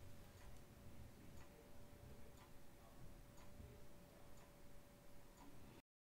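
Near silence with faint, regular clock-like ticking over a faint steady hum; the sound cuts out abruptly just before the end.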